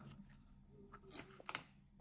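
Faint handling of dried orange slices on a table, with a couple of light clicks a little after a second in.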